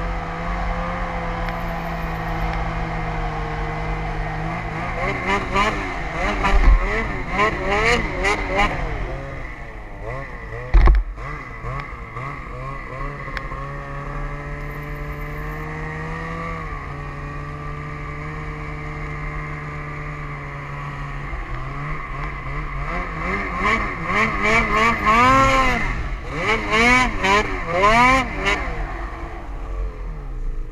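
Snowmobile engine running at a steady pace, twice breaking into quick swells of revving up and down, with a single sharp knock partway through.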